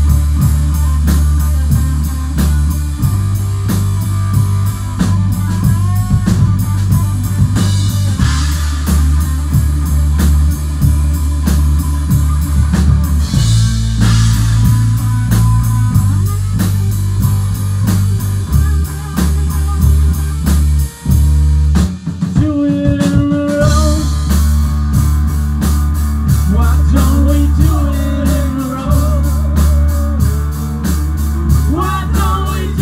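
Rock band playing live: electric guitar, electric bass and drum kit over a steady beat. About two-thirds of the way through, the bass drops out for a couple of seconds, leaving a few guitar notes, then the full band comes back in.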